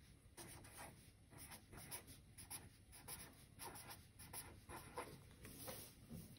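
Felt-tip marker writing on a sheet of paper: a run of short, faint strokes.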